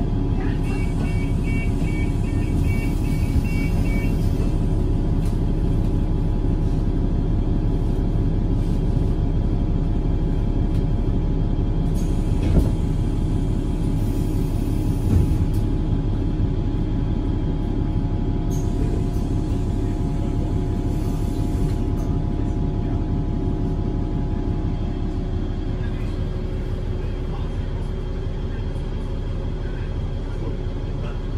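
Steady engine drone and rumble heard from inside a city bus, with a quick run of high beeps in the first few seconds and a couple of sharp knocks around the middle.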